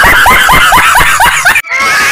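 A man's loud, high-pitched laugh, a rapid ha-ha-ha of about five pulses a second, cut off suddenly about one and a half seconds in. Voices of a group follow.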